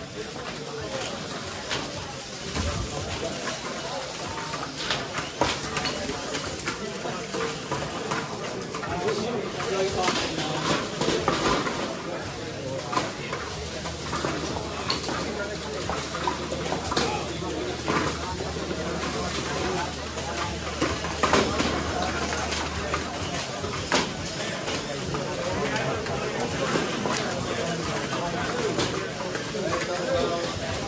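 VEX competition robots driving around a foam-tiled field during a match: electric drive motors whirring, with frequent clacks and knocks as they hit plastic triballs, field barriers and each other. A steady low hum runs for about ten seconds in the middle, and voices murmur in the room.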